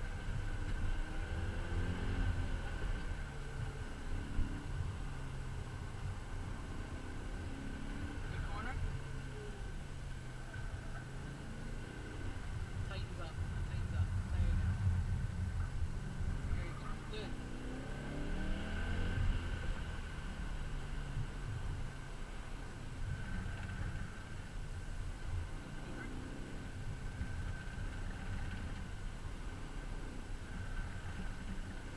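BMW E39 M5's 4.9-litre V8 heard from inside the cabin while the car is driven hard, its pitch rising and falling repeatedly as it accelerates and lifts between corners.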